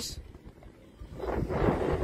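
Wind rushing over the microphone of a moving vehicle with a low road rumble, swelling into a louder rushing gust in the second half.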